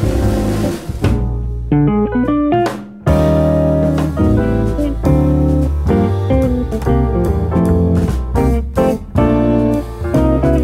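Small jazz group recording: drum kit played with sticks under a guitar melody. A cymbal wash opens, a short sparse melodic run follows, and the full band comes back in together about three seconds in, an arranged setup and hit.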